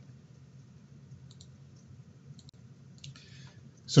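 A quiet pause with low room tone and a few faint, short clicks spread across it, then a brief soft hiss just before a man's voice resumes at the very end.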